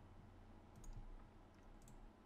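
A few faint computer mouse clicks as points are placed on a roto shape, over a steady low hum.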